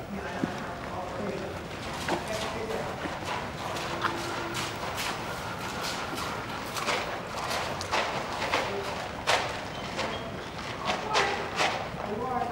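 A horse walking while being led, its hoofbeats coming as a run of sharp crackling knocks that thicken in the second half as it steps onto a plastic tarp laid between PVC poles.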